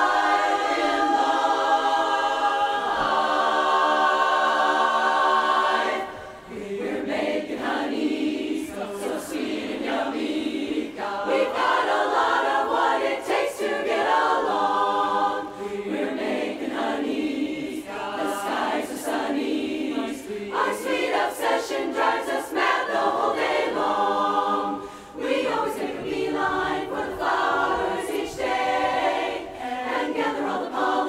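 Women's barbershop chorus singing a cappella in close harmony. A loud held chord runs for about the first six seconds, then drops off briefly before a quicker, rhythmic passage with short breaks between phrases.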